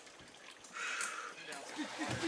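Faint voices of a group of men, with a brief hiss about a second in.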